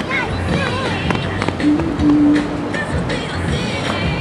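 Music playing along with people's voices, with a low note held for about a second around the middle.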